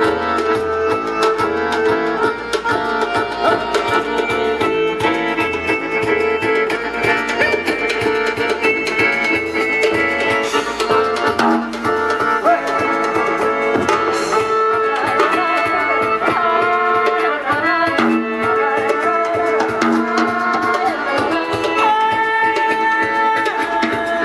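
A live acoustic folk-fusion band playing: accordion and double bass holding chords and a bass line over a quick, steady beat of hand drums and percussion.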